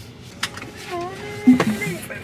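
A short wordless voice sound, a hum that dips and rises, with a sharp click just before it and a low thump about halfway through.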